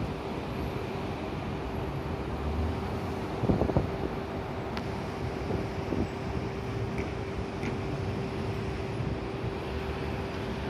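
Steady outdoor city-street noise of passing traffic and wind on the microphone, with a constant hum running underneath. A brief cluster of knocks about three and a half seconds in is the loudest moment, and a few faint ticks follow later.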